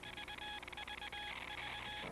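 Telegraph sound effect: a buzzing Morse-code tone keyed rapidly on and off in dots and dashes over fast clicking, cutting off abruptly at the end.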